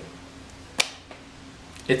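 A single short, sharp click a little under a second in, over quiet room tone; a voice starts again right at the end.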